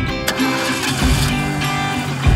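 Guitar-driven background music over a car engine being cranked and starting as the ignition key is turned, the car jump-started from a portable booster pack clamped to its battery. A strong low rumble sets in at once and swells again about a second in.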